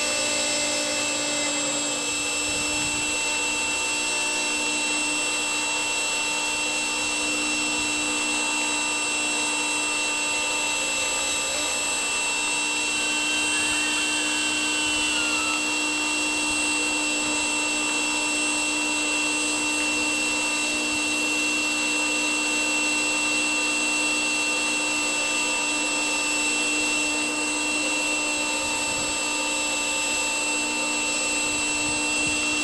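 Blower motor of a homemade roaster running steadily: a constant whirring hum with a fixed high whine.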